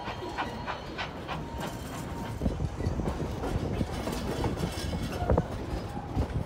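Narrow gauge passenger cars rolling along the track, a steady rumble with irregular clickety-clack knocks from the wheels over rail joints, heavier from about halfway through. A faint thin whine fades out about two seconds in.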